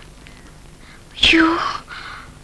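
A person's voice: one short, breathy, whispered utterance with a falling pitch, a little over a second in, after a quiet stretch.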